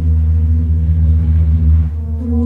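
Live electronic ambient music: a deep, steady drone with sustained ringing tones above it. The upper tone drops out near the end.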